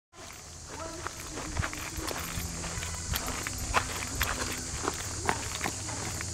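Footsteps on a dirt forest trail, about two steps a second, over a steady high hiss.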